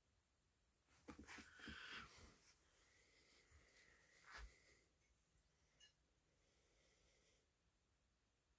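Near silence: room tone with a few faint rustles and soft clicks in the first half, and a small knock about four seconds in.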